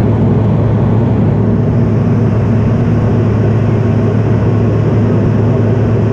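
Steady cabin noise of an airliner in flight: a rushing of air and engines with a steady low hum beneath it.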